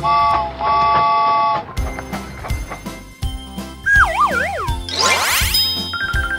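Cartoon soundtrack: children's music with a steady beat. For the first second and a half a three-note train whistle chord sounds, broken once. About four seconds in a wavering tone slides downward, and just after it a quick rising sweep follows.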